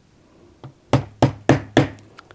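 Four light taps of a small watchmaker's hammer driving a pin into a stainless steel watch bracelet link held in a bracelet block, about three a second. The pin is being worked through its retaining collar and into the end link.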